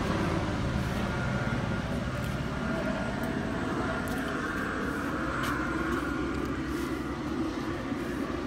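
Helicopter circling overhead: a steady, even drone of rotor and engine.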